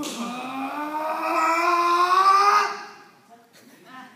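A person's long, drawn-out vocal cry on one breath, rising slowly in pitch, loudest just before it cuts off a little under three seconds in.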